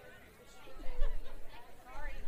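Indistinct chatter of several people's voices, with a low rumble coming in from about three-quarters of a second in.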